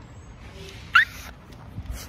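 A woman's short, high-pitched squeal about a second in: a startled reaction on first seeing herself. A low thump follows near the end.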